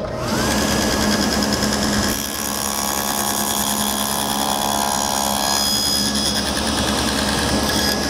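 Table saw with a quarter-inch stacked dado blade switched on and running up to speed, then cutting a test rabbet in the end of a wooden scrap block. The sound is steady, and its tone changes while the board passes over the blade, between about two and six seconds in.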